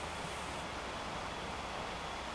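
Steady outdoor background noise, an even hiss with no distinct events.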